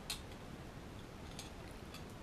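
A couple of faint metallic clicks, one near the start and one about a second and a half in: a digital caliper's jaws being closed on the carbide tip of a masonry drill bit to measure it. Low room hiss beneath.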